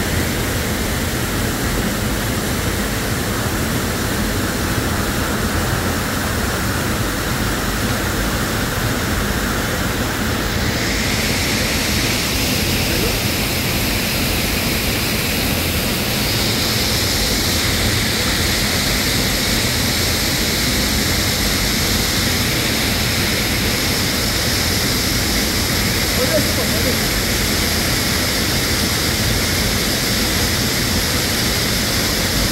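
Steady rushing roar of falling water in a rocky gorge, its tone shifting slightly about a third of the way in.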